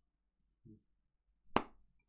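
Near silence broken by a faint low blip, then one sharp click about one and a half seconds in.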